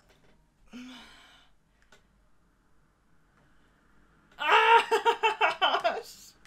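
A short breathy vocal sound about a second in, then a loud burst of laughter in quick pulses during the last second and a half.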